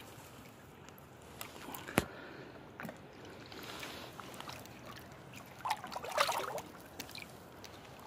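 Shallow river water sloshing and trickling around a steelhead held on a rope stringer, with a louder splash a little past the middle as the fish is handled by the stringer. A single sharp click about two seconds in.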